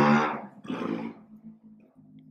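A man's voice holding a drawn-out sound that trails off about half a second in, a brief vocal sound just before a second in, then a faint low hum for the rest.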